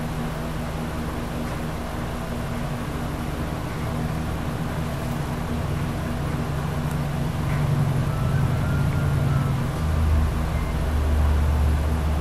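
A steady low mechanical rumble with a hum, growing louder in the last couple of seconds.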